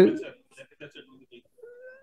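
Speech in a hearing room: a voice ends a word at the start, then there is faint low murmuring. Near the end comes a faint, drawn-out vocal hum held on one pitch.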